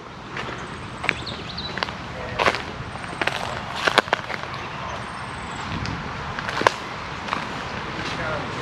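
Footsteps on a dirt walking track: irregular crunching steps and knocks over a steady outdoor hiss, with a few faint, thin, high chirps.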